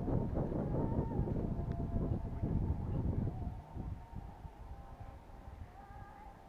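Wind buffeting the camera microphone in an uneven low rumble that eases off about halfway through, with a faint wavering high tone behind it.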